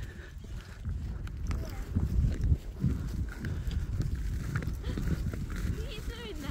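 A horse's hoofbeats on a stubble field, heard from the saddle, under a continuous low rumble.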